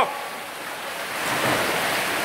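Water splashing and churning as swimmers swim breaststroke down a pool, building up over the second half.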